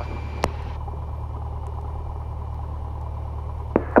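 Cessna 172's piston engine running steadily at low power, heard from the cockpit as an even low drone. A single click comes about half a second in, and a band of radio hiss cuts off just under a second in.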